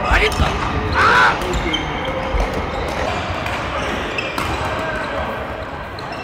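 Badminton doubles rally in a large sports hall: players' footfalls thudding on the court floor and sharp racket hits on the shuttlecock, with voices and play from other courts echoing around the hall.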